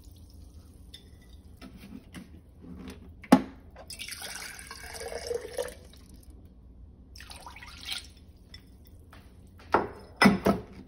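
Water dripping and splashing from an emptied glass jar into a slow cooker full of liquid, in soft patches, with a sharp knock about three seconds in.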